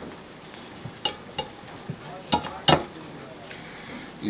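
Carving knife working through the leg joint and crisp skin of a roast turkey: a few short, sharp clicks and crackles, the loudest near the end.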